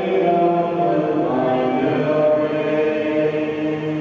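Voices singing a slow communion hymn in long held notes that step from pitch to pitch.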